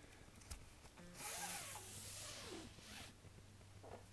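Nylon paracord being pulled through a plastic buckle, a rushing, zipper-like rub that starts about a second in and lasts about two seconds.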